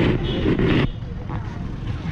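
Street noise: a brief burst of a person's voice in the first second, then a steady low rumble of traffic and wind.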